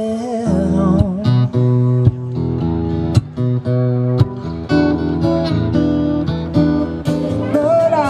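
Live instrumental passage of a strummed acoustic guitar over sustained electric keyboard notes, with no vocals.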